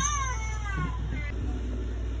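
A four-month-old baby's brief high-pitched squeal right at the start, falling in pitch, followed by a few softer vocal sounds, over the steady low rumble of a car cabin.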